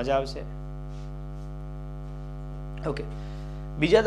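Steady electrical mains hum with a stack of evenly spaced buzzing overtones, unchanging throughout, with short bits of a man's voice just after the start and near the end.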